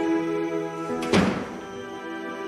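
A wooden door shutting with a single loud thunk about a second in, over background music with sustained notes.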